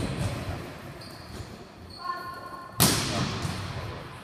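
A volleyball struck hard in a spiking drill: one sharp smack about three seconds in that rings on in a large hall, with a player's voice calling out just before it.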